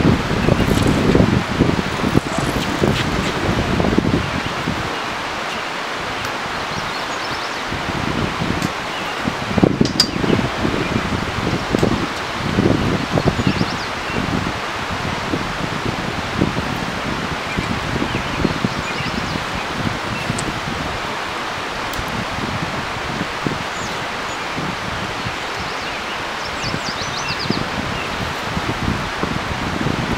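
Steady rushing of wind through the trees, with scattered low gusts and bumps, strongest in the first few seconds and again about ten and thirteen seconds in.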